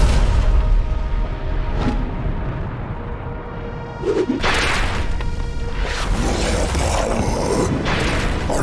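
Motion-comic explosion sound effect: a deep boom right at the start as a hurled chunk of moon is smashed apart, fading over a second or two. It sits over dramatic background music, and a loud whooshing rush of noise starts about four seconds in.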